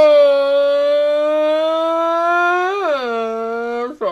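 A woman letting out one long, loud wail, held at a steady pitch and then dipping lower near the end before it stops.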